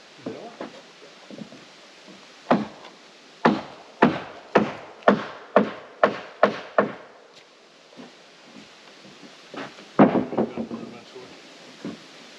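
Hammer blows on wooden framing: about nine sharp strikes at roughly two a second, starting a couple of seconds in, then a few more knocks near the end.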